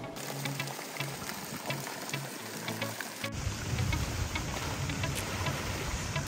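Background music with a steady low beat over a constant hiss of rushing, splashing water from waterslides pouring into a pool.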